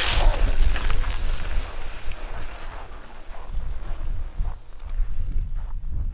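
Wind buffeting the microphone with a steady low rumble, over the hiss of skis sliding on packed snow as a skier pushes off and glides away. The ski hiss is strongest in the first second and then fades.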